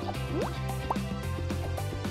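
Background music with a steady beat, with two quick rising blip sounds, like water drops, about half a second and about one second in.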